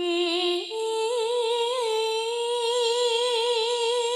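A woman singing a long melismatic line: a lower note that steps up to a higher one less than a second in, then held with a slow, wide vibrato.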